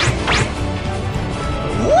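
Anime soundtrack music under two quick, steeply falling sound-effect sweeps near the start, then a man's startled rising cry of 'uwa' at the very end.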